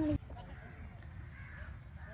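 Faint distant bird calls, a few short arched notes, over a quiet outdoor background, after a voice that cuts off right at the start.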